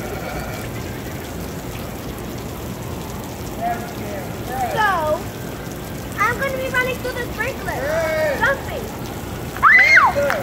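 Steady hiss of a water jet from an open fire hydrant spraying and pattering onto the street. From about four seconds in, children's high-pitched shrieks and calls come over it, the loudest one near the end.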